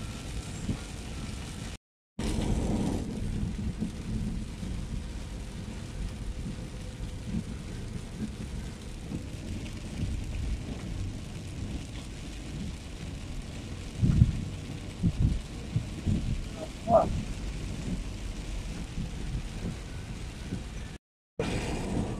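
Car cabin noise while driving on a wet highway: a steady low rumble of engine and tyres on the wet road, with a few low thumps about two-thirds of the way through. The sound cuts to silence twice, briefly, near the start and near the end.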